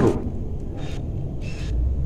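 Low, steady outdoor background rumble, swelling slightly near the end, with a couple of faint short hisses in the middle.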